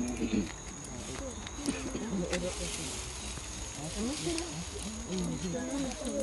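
Indistinct voices of several people talking, untranscribed, over a steady thin high-pitched whine and a low rumble.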